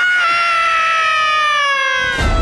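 A person's long drawn-out scream, held steady in loudness and slowly falling in pitch.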